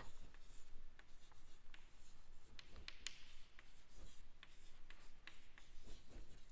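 Chalk writing on a blackboard: faint scratching with many short light taps as words are written.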